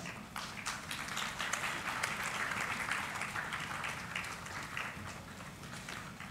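Audience applauding, a steady patter of many hands clapping that eases off slightly near the end.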